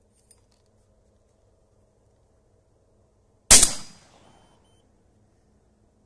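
A single 12-gauge shotgun shot about three and a half seconds in, its report fading out over about half a second. The handloaded shell is fired with a weak Nobel Sport primer.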